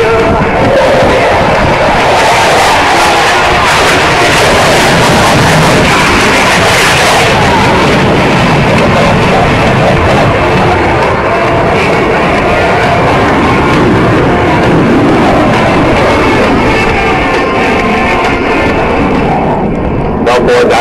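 Jet noise from Blue Angels F/A-18 Hornets flying past, a loud, steady noise that is strongest about two to seven seconds in, with music from loudspeakers underneath.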